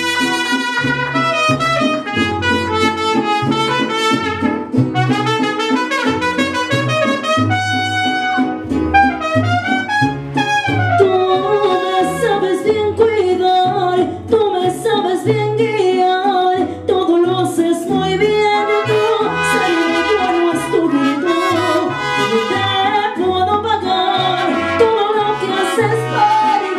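Live mariachi music: trumpets play over strummed guitar and vihuela and a plucked guitarrón bass line, with a woman singing through a microphone.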